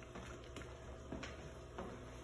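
Faint, soft taps as washed rice is scraped out of a plastic bowl into a metal cooking pot, over a low steady hum.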